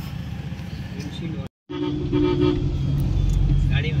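Road traffic heard from inside a moving car: a steady low rumble of engine and road, then, from about halfway, a vehicle horn sounding in short repeated beeps.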